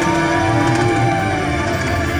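Live band music over a concert PA, heard from among the audience: a long held melody note over a steady low accompaniment, with no singing words.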